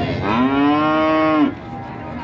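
A cow moos once: one long call that rises in pitch at the start, holds steady for over a second, then stops short.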